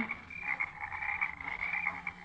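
Night-time chorus of frogs as a radio sound effect: a steady, high, trilling tone that runs without a break.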